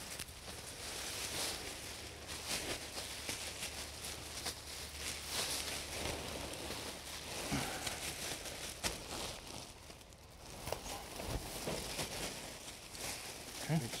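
Black plastic garbage bag crinkling and rustling as handfuls of pulled vines are pushed into it, with leaves and stems rustling against the plastic in irregular bursts.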